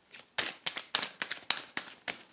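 A deck of tarot cards being shuffled in the hands: a quick run of sharp snaps and clicks, about five or six a second, starting about half a second in.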